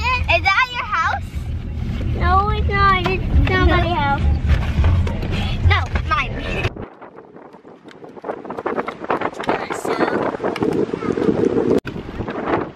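Children's voices over the low rumble of a car cabin. About seven seconds in this changes suddenly to the rough rushing of wind buffeting the microphone outdoors, which grows louder toward the end.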